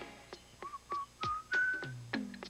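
A whistled tune: a few short notes stepping upward in pitch, then a longer held note near the end, with sharp clicks between them.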